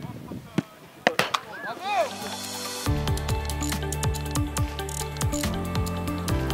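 A football is kicked a few times, with short shouts from players on the pitch. About halfway through, background music with a steady beat comes in suddenly and becomes the loudest sound.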